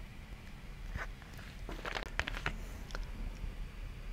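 Scattered soft computer mouse clicks and desk taps, with a quick run of several about two seconds in, over a low steady hum.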